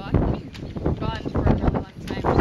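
Speech during the interview, with wind buffeting the microphone as a steady low rumble underneath.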